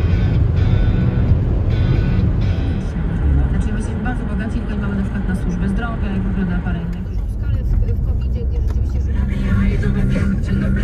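Steady road and engine noise heard inside a moving car's cabin, mixed with background music.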